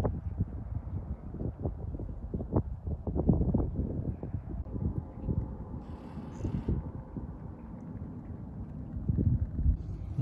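Wind buffeting the microphone, an uneven low rumble, with scattered low knocks and bumps through it and a brief hiss about six seconds in.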